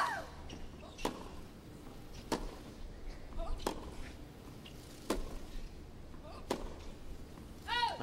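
Tennis rackets striking the ball back and forth in a baseline rally, about six sharp hits roughly a second and a half apart.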